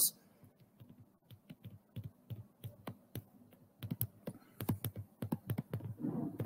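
Stylus on a drawing tablet, tapping and clicking irregularly as words are handwritten. The clicks are faint and sparse at first and come thicker from about halfway.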